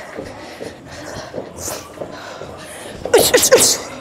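A boxer's sharp exhaled breaths timed to her punches as she throws a combination: one short breath about one and a half seconds in, then a quick cluster of several loud ones near the end.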